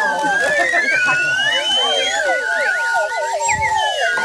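Several toy slide whistles shaped like dachshunds blown all at once, their pitches gliding up and down and crossing each other in a dense tangle of swoops.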